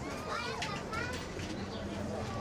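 Café background ambience: indistinct chatter of several overlapping voices, some of them high-pitched, over a steady low room murmur, with a few light clinks about half a second to a second in.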